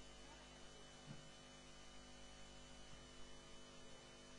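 Near silence: a steady electrical hum with a faint high whine.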